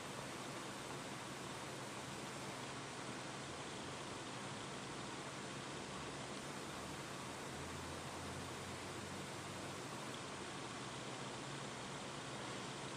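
Steady faint hiss of room tone with a faint low hum underneath; no distinct sounds stand out.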